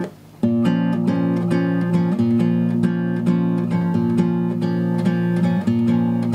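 Aria nylon-string classical guitar, capoed at the first fret, fingerpicked on an A minor chord in a steady, evenly counted repeating pattern of single plucked notes, starting about half a second in.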